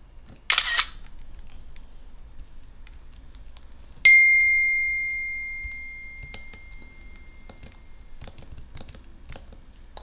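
A computer screenshot tool's camera-shutter sound about half a second in, as a screen capture is taken. About four seconds in comes a single bright computer chime that rings out and fades slowly, with faint mouse clicks scattered around it.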